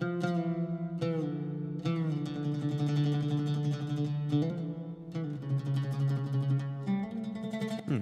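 Orchestral instrument track playing back a slow line of sustained low notes, changing every second or two. It runs through a dynamic EQ set to cut a boxy, muddy midrange resonance only when one particular note sounds.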